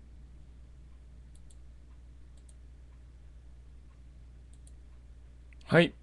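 Low steady electrical hum from a home broadcast microphone setup, with a few faint, brief clicks. Near the end a man says "hai" into a headset microphone.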